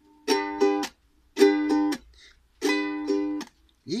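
Fender ukulele strummed in a down-up pattern, each group cut off with a muted chop. The chord sounds in three short bursts about a second and a quarter apart, with silence between them.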